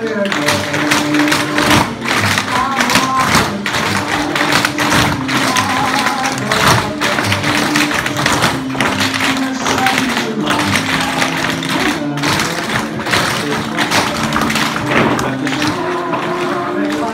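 Tap shoes of a group of dancers striking a wooden floor in dense, uneven runs of clicks, over recorded music.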